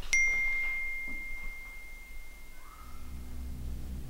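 Smartphone text-message alert: a single bright ding that rings on and fades away over about three seconds. A low drone comes in near the end.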